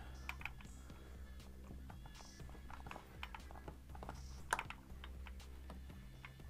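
Light clicks and taps of the brushless motor and its pinion being shifted against the spur gear by hand while the gear mesh is set, with one louder knock about four and a half seconds in. Faint background music underneath.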